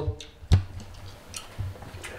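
A single sharp click or knock about half a second in, then a fainter tick a little later, from small things being handled in a kitchen.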